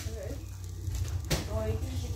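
Short snatches of a man's voice, too brief to make out, with a sharp click a little past the middle.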